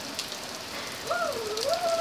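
Heavy rain falling on paving and a shed roof, a steady hiss full of small drop patters. About halfway through, a high, drawn-out vocal sound wavers up and down to the end.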